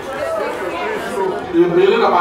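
Speech only: a man preaching into a handheld microphone, his voice amplified and echoing in a large hall.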